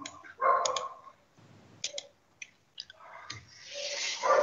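Several sharp, scattered clicks of a computer mouse, with a short faint sound about half a second in and a soft hiss building near the end.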